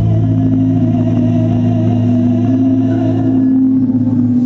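A choir and a female soloist holding a long sustained chord. The soloist's higher note wavers with vibrato and ends a little before the close, while the lower voices hold on.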